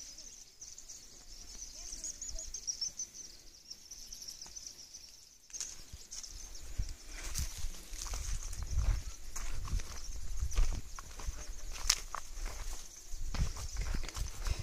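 Footsteps and rustling of leafy plants as someone walks through a crop field, louder and busier from about six seconds in, over a steady high insect chirring.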